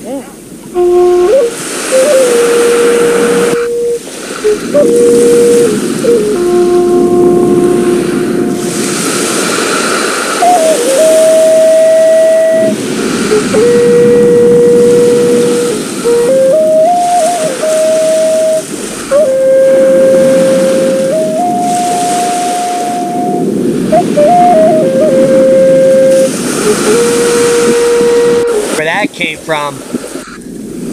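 Music: a slow melody of long held notes stepping between a few pitches, over a steady rushing backing.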